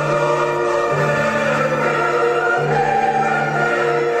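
Choral music with orchestral accompaniment: slow, sustained chords over a held bass note that changes about every second and a half.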